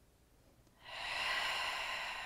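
A woman's breath: one long, audible breath out through the mouth, starting about a second in, as she sinks into a lunge in time with her breathing.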